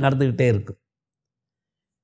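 A man speaking in Tamil for under a second, then cut off into dead silence.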